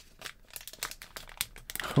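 Clear plastic wrapping crinkling as a thick card is handled and turned over, in a run of quick, irregular crackles.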